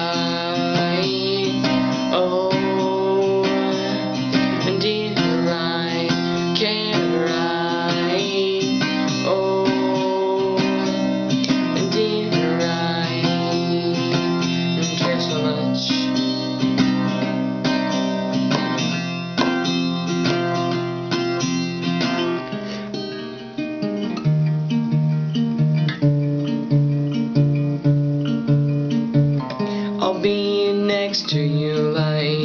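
Cutaway steel-string acoustic guitar strummed in changing chords. A short dip at about 23 seconds, then the playing picks up with a low bass note pulsing under the chords.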